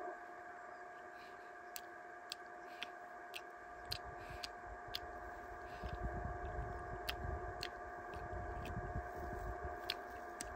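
Faint, scattered small clicks of food being peeled and eaten by hand, over a faint steady hum, with a low rumble coming in about four seconds in.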